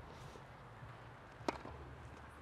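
A single sharp tap of a tennis ball bouncing on the clay court, about one and a half seconds in, as the server bounces the ball before serving.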